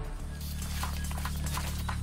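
Background music with a steady low bass drone, with faint light ticks scattered over it.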